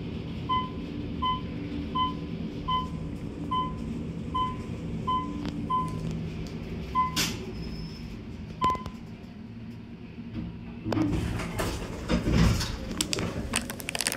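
An Otis traction elevator cab descending, its floor-passing beeper giving a short high beep at each floor, about one every three-quarters of a second, the beeps spacing out as the car slows to stop. A steady low hum of the moving car runs under it. Near the end the landing doors open with a rumble and rustle.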